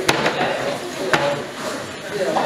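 Two sharp knocks about a second apart as fish are dropped into a stainless steel pot, over the chatter of a busy market hall.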